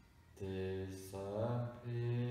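A hypnotherapist's low, slow male voice in a drawn-out, chant-like monotone, beginning about half a second in. A short hiss comes near the middle and the pitch rises briefly before the voice is held again.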